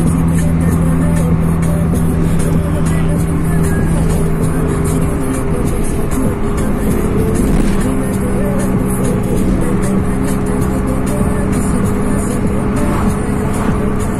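Car cabin noise at highway speed: steady engine and road noise, with music playing from the dashboard stereo.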